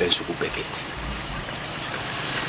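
Insects singing in the field vegetation: a steady, high-pitched pulsing trill.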